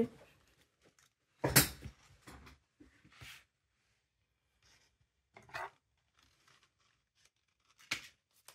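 Folded paper strips being handled and set down on a wooden table: one louder rustle about a second and a half in, then a few soft rustles and light taps, with a short click just before the end.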